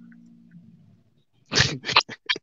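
A person laughing out loud in sudden breathy bursts that start near the end, after a quiet low hum that fades out in the first second.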